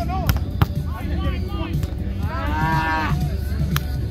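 Beach volleyball rally: two sharp smacks of hands striking the ball early on, short shouts, then a long drawn-out shout about two to three seconds in, and another sharp smack near the end, over a steady low rumble.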